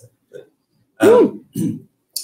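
A man clearing his throat after a sip of a strong drink: one loud throat clear about a second in with a rising-and-falling vocal tone, followed by a shorter second one.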